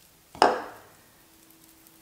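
A single sharp slap about half a second in, fading quickly: palms meeting as they roll a cocoa-dusted marzipan ball between them. Then quiet, with a faint steady hum.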